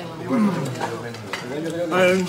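A man clearing his throat with rough, voiced coughs, twice: a falling one early on and a longer one near the end.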